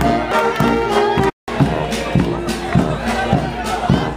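A banda street brass band playing a tune with sustained brass notes over a steady drum beat, amid crowd voices. The sound cuts out for a split second about a third of the way in.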